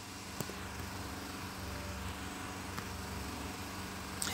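Steady faint background hum and hiss, with a faint click about half a second in and another later.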